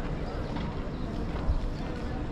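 Footsteps on stone paving while walking, with visitors' voices chatting in the background. A single low thump about one and a half seconds in.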